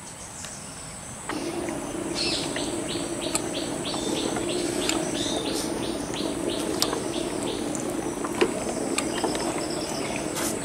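An insect chirping in a regular rhythm, about three short high chirps a second, fading out after about seven seconds, over a steady low hum that starts about a second in.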